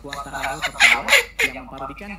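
A man laughing loudly, with two sharp, shrill bursts about a second in.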